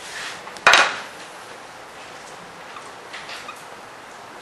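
Whiteboard eraser rubbing across the board, then a single sharp clack about two-thirds of a second in, the loudest sound here. Faint marker strokes on the whiteboard follow later.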